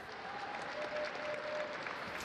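Arena crowd applauding steadily, a continuous even patter of many hands.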